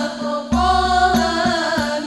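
Al-Banjari ensemble: several girls' voices singing a sholawat melody together with gliding, ornamented pitch, over rebana frame drums struck in a steady pattern, with a deep low drum boom entering about half a second in.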